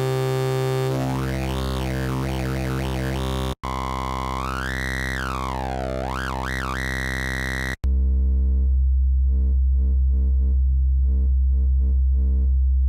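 Xfer Serum wavetable synth holding one sustained bass note while oscillator B's wavetable is changed twice, with a brief gap at each change. In the first two stretches a resonance sweeps up and down as the wavetable position is turned. The last stretch is a deeper, duller bass with little top end.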